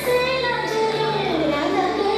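A song playing: a high singing voice carrying a melody over a music backing, the tune gliding downward partway through.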